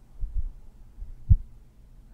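A few low, muffled thumps at uneven intervals, the sharpest and loudest a little past one second in.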